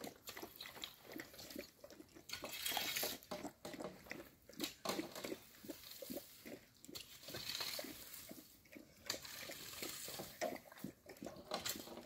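Quiet, irregular crunching and chewing of a dog eating from a metal tray, with a rake now and then scraping over dry earth and fallen leaves.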